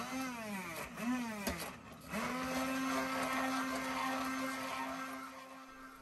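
Stainless-steel immersion (stick) blender running in a pan of thick cooked onion-tomato masala, blending it into gravy. Its motor pitch swells and dips twice in the first two seconds, then holds steady and fades near the end.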